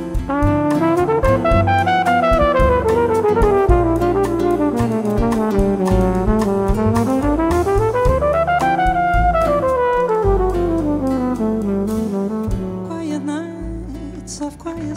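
Flugelhorn solo in a bossa nova, played over piano, upright bass and drums: long runs of quick notes that fall, climb and fall again, easing off in the last second or two.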